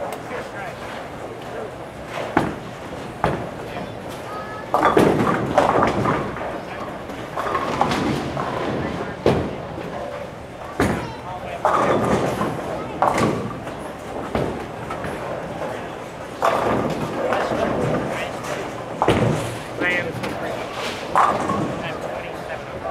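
Bowling alley din: indistinct chatter from other bowlers, broken by several sharp knocks and crashes of bowling balls and pins on the lanes.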